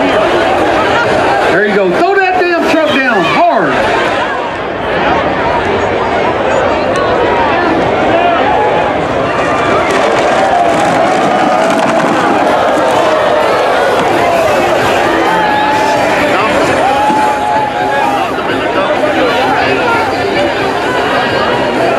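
Crowd of spectators talking and shouting over one another, a steady loud hubbub of many voices, busiest about two to three seconds in.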